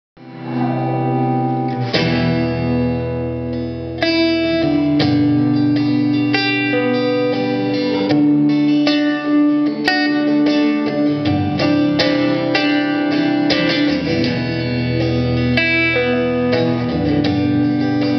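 Acoustic guitar playing the instrumental introduction to a song, with picked and strummed chords that change about every two seconds over sustained low bass notes.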